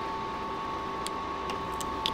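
A steady high whine of two close tones, with a few faint ticks of a metal weeding hook picking at freshly cut heat transfer vinyl.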